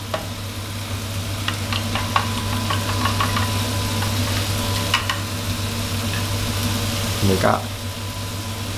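Shrimp and sliced onion sizzling steadily in a nonstick wok over high heat, with a few light clicks in the middle and a steady low hum underneath.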